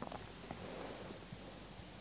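Faint rubbing of a hand over oiled skin, a knee being massaged with firm pressure, with a couple of soft ticks near the start.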